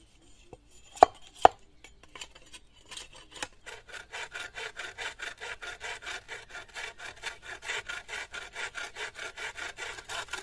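Two sharp knife strikes on a green bamboo stalk about a second in. From about four seconds in, a bow saw cuts through the bamboo with fast, even back-and-forth rasping strokes, about five a second.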